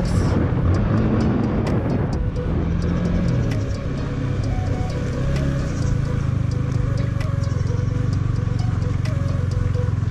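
Yamaha motorcycle engine running at low speed on a rough dirt road, easing off about three seconds in and then running steadily. Faint music plays under it.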